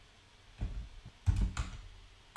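Computer keyboard being typed on: a few short clusters of keystrokes.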